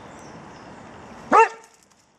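A dog gives one short, high bark about one and a half seconds in.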